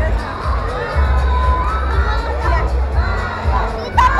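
A crowd shouting and cheering, many voices at once, with the deep bass of background music pulsing underneath.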